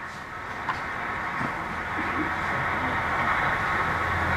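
Steady rushing drone of a light aircraft in flight, a Cessna 152 Aerobat entering a spin, growing gradually louder. It is heard from the soundtrack of old TV footage played back over a speaker.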